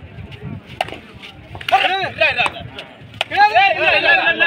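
Men's voices shouting during a kabaddi raid in quick rising-and-falling calls, loudest from a little before halfway and again in the last second. Sharp clicks are scattered throughout.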